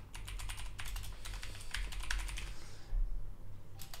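Typing on a computer keyboard: a quick run of keystrokes that stops a little under three seconds in.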